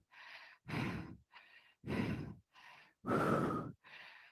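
A woman breathing hard from exertion, close on a headset microphone: three stronger breaths about a second apart, with fainter breaths between them.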